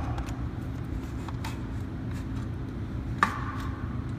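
Check valve number two being slid out of the stainless-steel body of a Watts 957 reduced-pressure backflow preventer and handled, giving faint scrapes and small clicks, with one sharp click about three seconds in, over a steady low hum.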